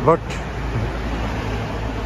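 Steady road traffic: cars driving along a city street, their engines and tyres making an even low rumble.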